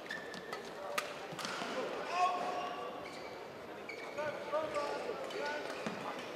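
Badminton doubles rally: sharp racket strikes on the shuttlecock in the first second or so, then short squeaks of shoes on the court mat as the players move, over the hum of a large hall.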